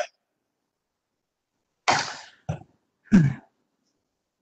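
A person coughing and clearing their throat over a video-call microphone: three short bursts in the second half, with dead silence before them.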